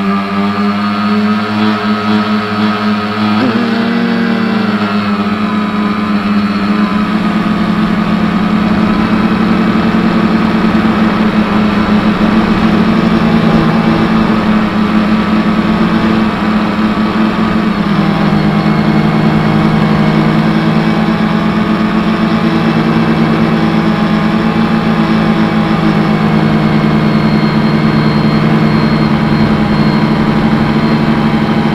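A prototype drone's electric motors and propellers, heard close up from the aircraft itself, with a loud steady hum. The pitch bends up and down during the first few seconds as the throttle changes on the climb, then holds nearly level in cruise flight.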